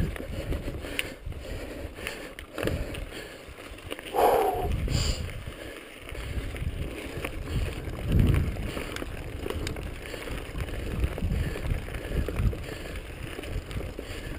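Mountain bike riding down a rocky dirt trail: a steady rumble of tyres over rocks and roots, broken by scattered knocks and rattles from the bike.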